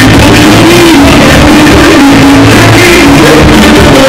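Loud live pop band music played continuously, a wavering melody line carried over keyboard and band accompaniment.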